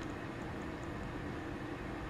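Steady low background hiss and hum with no distinct events: room tone.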